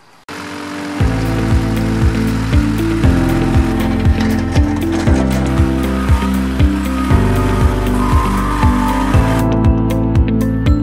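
Intro music with a steady beat, about two beats a second over a bass line, coming in about a second in.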